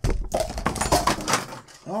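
Clear plastic toy-packaging insert crinkling and crackling as it is handled, a quick run of crackles that thins out about a second and a half in.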